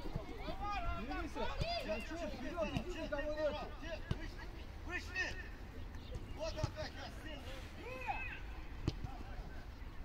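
Footballers shouting and calling to each other across the pitch during play, with a few sharp knocks of the ball being kicked.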